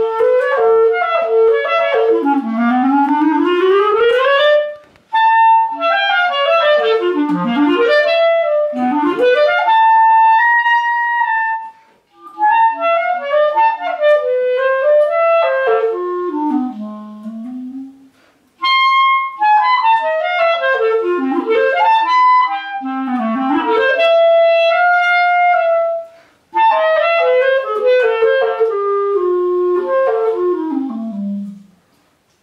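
Solo clarinet playing quick runs up and down, with a few longer held notes. The phrases are broken by brief pauses for breath.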